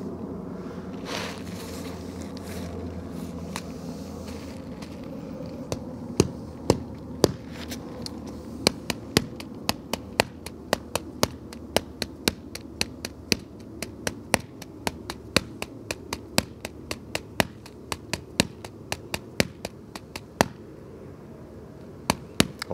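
A jet airliner passing overhead, a low rumble that fades away over the first few seconds. Then a long irregular run of sharp clicks or taps, two or three a second, from about six seconds in until shortly before the end.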